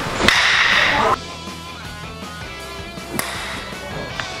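A single sharp smack as a batter swings at a pitched baseball, followed by a loud rushing noise lasting under a second; background music with steady tones carries on after it.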